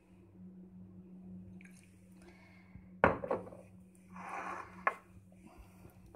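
A glass bottle of balsamic vinegar being handled and set down with a sharp knock about three seconds in, followed by a short rustle and a small click, over a low steady hum.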